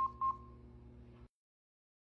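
LIFEPAK 20 defibrillator-monitor sounding its heartbeat beep twice in quick succession, about a quarter-second apart, in step with a heart rate of about 220 a minute in ventricular tachycardia. A low steady hum runs under it and cuts off about a second in.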